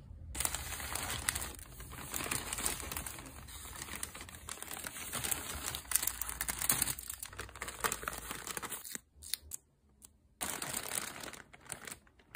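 Paper inserts and a plastic poly mailer bag being handled, crinkling and rustling with many small crackles. The sound drops out briefly about nine seconds in, then resumes.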